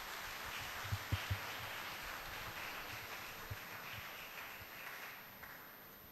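Soft applause from a congregation in a hall, swelling in and dying away after about five seconds, with a few dull low thumps about a second in.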